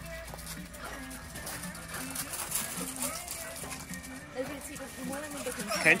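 Faint, indistinct talking over quiet background music.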